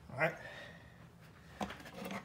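A man's voice says a brief "All right," followed by a few faint clicks and rustles near the end.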